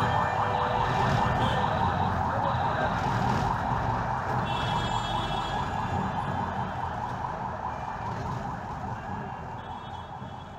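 Instrumental end of a country-blues song fading out slowly: a dense, wavering wail over a low rumble, growing steadily quieter.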